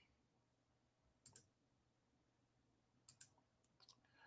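Near silence broken by a few faint computer mouse clicks: a quick double click about a second in, another pair about three seconds in, and two lighter clicks near the end.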